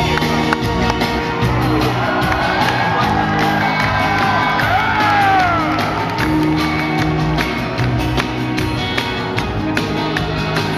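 Live rock band playing loudly, with drums and bass. Audience shouts and whoops rise over it, strongest from about two to six seconds in.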